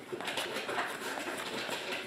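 Glossy trading cards being flipped through by hand, each card sliding off the stack with a soft flick, a few to the second, over a steady rustle.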